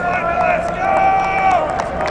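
Men's voices shouting and calling out across a football practice field, one call held long about a second in, with scattered short sharp knocks.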